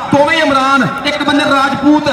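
A man's voice giving continuous match commentary.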